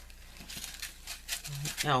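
Small clear plastic bags of diamond-painting drills and their plastic wrapping crinkling softly as they are handled and shuffled on a table, in faint irregular crackles.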